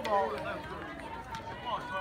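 Mostly speech: people talking in the background, a voice near the start and another near the end over low general chatter.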